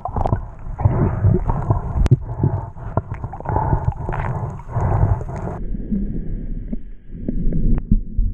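Muffled underwater noise picked up through an action camera's housing while a free diver swims and handles his catch: irregular water rushing, gurgling and small knocks. After about five and a half seconds the higher sounds drop away, leaving a duller low rumble.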